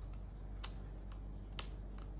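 A few light clicks from a diary's small lock and tiny keys being handled as it is locked, the loudest about one and a half seconds in.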